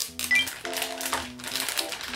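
Background music with steady held notes, over quick crinkling and clicking of a plastic pickle pouch being squeezed open to empty it into a container.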